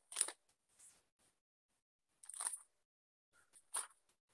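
Bible pages being turned while the verse is looked up: three short papery rustles, the first the loudest.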